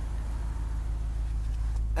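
Steady low rumble of the Jeep Grand Cherokee SRT8's 6.1-litre Hemi V8 idling, heard from inside the cabin.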